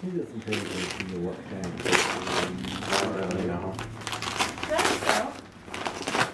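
Gift wrapping paper being torn and crinkled by hand as a present is unwrapped, in several short rustles.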